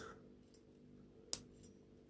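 Lock pick working the pins of an Abus 83CS/45 brass padlock: a few faint ticks, then one sharp metallic click about a second and a half in, the sound of a pin setting under tension.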